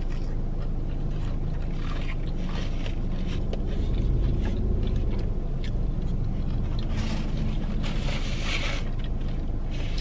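Steady low rumble inside a parked car, with faint chewing, and paper rustling near the end as a napkin is handled.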